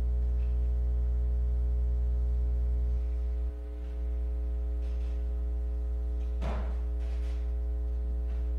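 Steady electrical mains hum with a stack of harmonics, picked up through the church's sound system. It dips briefly near the middle, and a short noise comes about six and a half seconds in.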